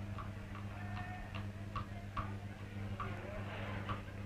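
Even footfalls on a hard surface, about two and a half a second, over a steady low hum.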